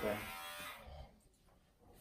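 Electric hair clippers buzzing steadily, then cutting out within the first second.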